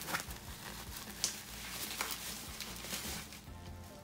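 Bubble-wrap packaging being cut open and handled: scattered crinkles and a few sharp clicks.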